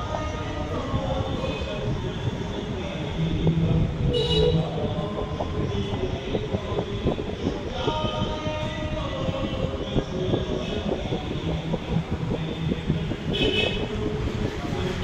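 Indistinct voices over a steady low rumble of background noise, with small knocks and clatter throughout.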